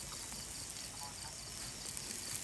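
Night insects chirping in a fast, even rhythm, about four chirps a second, over a steady hiss from a pan cooking on a portable gas stove.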